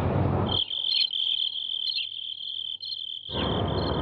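Crickets chirping in a steady high trill as night ambience. A broad background rumble and hiss under them drops away about half a second in and comes back near the end.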